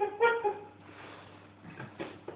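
A brief pitched sound, likely a person's voice holding a short note or exclamation, in the first half-second, then a quiet room with a faint steady hum.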